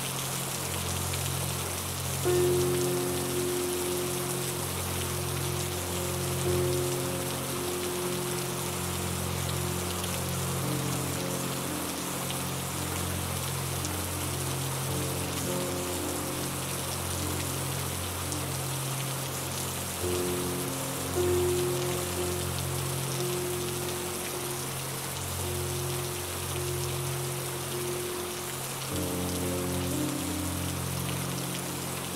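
Steady rain falling, with slow, calm music of long held notes and a low bass line underneath.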